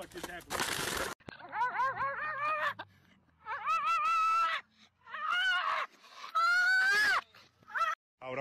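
A short noisy burst in the first second. Then a young husky-type dog howls: first a string of short rising-and-falling howls, then longer held howls with gaps between them, the last one rising in pitch.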